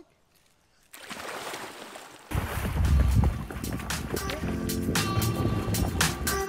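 Creek water splashing and sloshing as people wade and swim, starting after about a second of near silence, with a low wind rumble on the microphone. Background music comes in faintly near the end.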